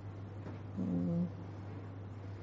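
A brief, level-pitched hummed "mm" from a woman's voice, about half a second long, near the middle, over a steady low electrical hum.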